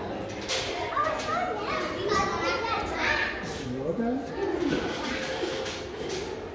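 Indistinct voices and chatter of young children playing in a large indoor hall.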